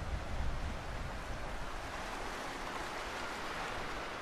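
Sea waves washing over a rocky, pebbly shore as a steady hiss, with wind buffeting the microphone as a low rumble in the first second.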